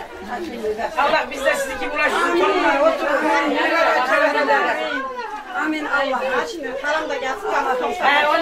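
Several women talking over one another: overlapping chatter, with no single voice clear.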